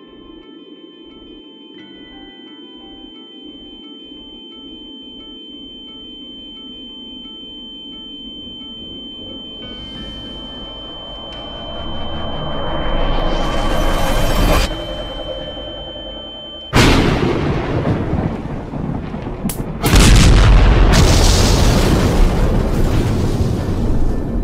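Cartoon electric power-up sound effects: a steady high tone over low pulses that come faster and faster, then a rushing noise that swells and cuts off suddenly. Two loud explosive blasts of crackling energy follow, the second one the loudest.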